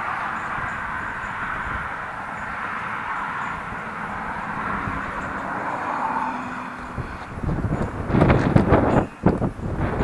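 Steady road rumble and rattle from a utility trailer being towed, with a stand-on mower riding on its deck. In the last two or three seconds it breaks into louder, irregular clattering and knocking.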